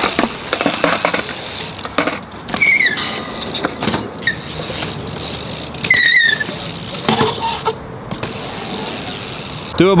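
BMX bike tyres rolling on a concrete skatepark bowl, with scattered knocks and two short high-pitched squeals about three and six seconds in.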